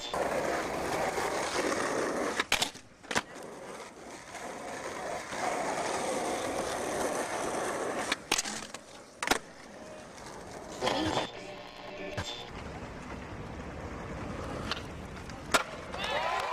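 Skateboard wheels rolling over concrete, broken by several sharp clacks of the board popping and landing during tricks.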